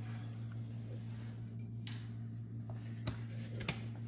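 Room tone with a steady low hum, and two brief clicks about three seconds in and shortly before the end.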